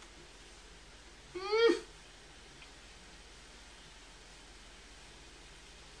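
A single short high-pitched vocal sound about a second and a half in, rising then falling in pitch. Otherwise near silence.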